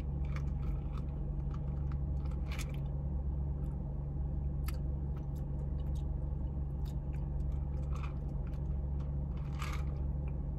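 A few short sips through a straw and soft mouth sounds over the steady low hum of a car cabin.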